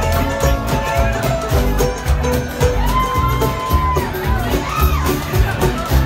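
Live string band playing an instrumental passage: upright bass, acoustic guitar, mandolin and banjo over a steady beat, with a lead line of held and sliding notes. Crowd noise runs underneath.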